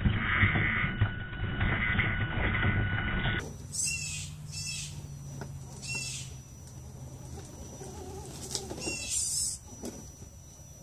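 For the first three seconds, scratchy rumbling noise comes from a scale RC rock crawler crawling right beside the camera, with repeated rasping bursts. After a sudden change, a bird gives four short warbling calls over a low steady hum.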